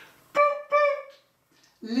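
Two short, high 'toot' notes blown or voiced through cupped hands, imitating a baby's toy trumpet, the second slightly longer and bending in pitch.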